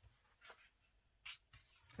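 Faint paper rustles as a page of a pixel-art colouring book is turned and smoothed flat by hand: two short swishes, the clearer one just past the middle.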